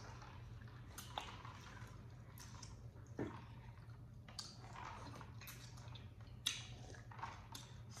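Faint chewing and wet mouth sounds from eating beef tripe, with a few soft smacks and squishes spread through.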